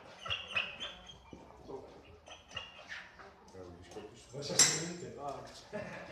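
A dog whining with high, thin cries, then one sharp, loud bark a little past halfway, over people talking.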